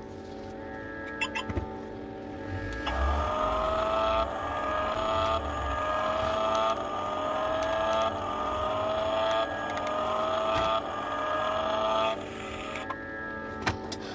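Remote-control toy car giving a whine that starts abruptly, rises in pitch and cuts off. It repeats about seven times in a row, roughly every second and a half, from about three seconds in until near the end, over steady background music.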